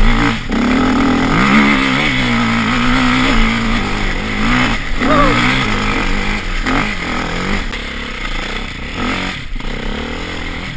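Off-road motorcycle engine under load, its revs rising and falling as the throttle is worked, dropping off briefly several times.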